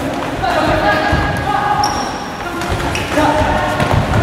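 Punches and kicks landing on padded focus mitts and sparring gloves with dull thuds, a few in a few seconds, over people's voices.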